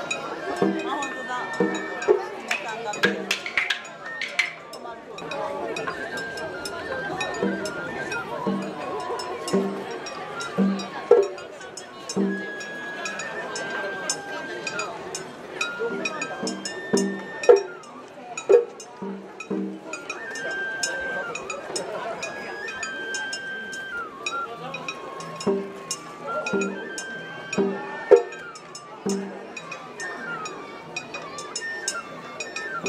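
Japanese festival float music (matsuri-bayashi): a bamboo flute plays a melody of held notes that step up and down, over drum beats and quick metallic clinks of a small hand gong. Crowd voices are mixed in.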